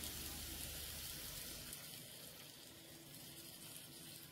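Chicken pieces faintly sizzling in oil and curry powder in a hot frying pan, a soft, even hiss.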